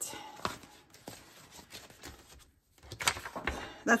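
Paper banknotes and a clear plastic binder pocket rustling and crinkling as cash is handled and tucked in, with a few light knocks on the table; a second burst of paper rustling about three seconds in as a sheet is picked up.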